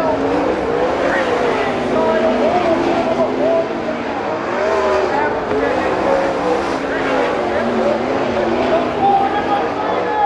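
Several winged sprint cars' V8 engines running hard on the dirt oval. Their overlapping notes rise and fall as the drivers get on and off the throttle through the turns.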